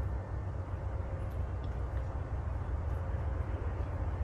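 Steady low rumble and hiss of outdoor urban background noise.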